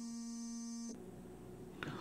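A man's drawn-out hesitation sound, a held "uhhh" at one steady pitch, that ends about a second in. Faint room tone follows.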